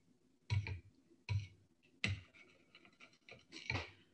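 Spoon stirring a thick peanut butter and coconut milk dressing in a small ceramic bowl, scraping against the bowl in four short strokes with brief pauses between them.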